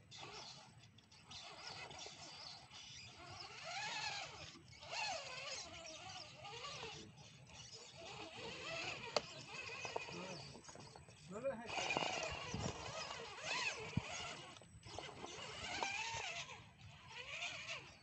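Human voices talking and exclaiming in phrases, with rising and falling pitch.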